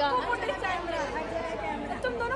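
Indistinct speech and chatter of people talking, quieter than a foreground voice, in a large room.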